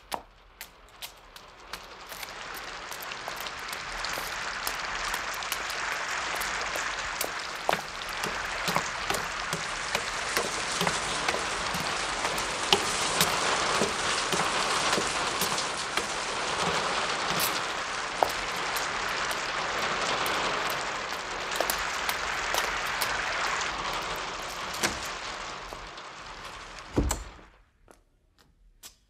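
Heavy rain, swelling in over the first few seconds and holding steady with many scattered sharp ticks. It cuts off suddenly near the end, just after a low thud.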